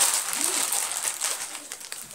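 Crinkling of a plastic chewing-gum wrapper being unwrapped by hand, starting suddenly and slowly dying away.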